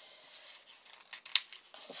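Light handling of sticker sheets and small tools: a few faint ticks, then one short sharp click about a second and a half in.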